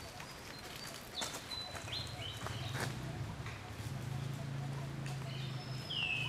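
Long-tailed macaque biting and chewing kernels off a corn cob: scattered sharp clicks and crunches. Short high-pitched calls that step down in pitch come through several times, and a low steady hum sets in about two seconds in.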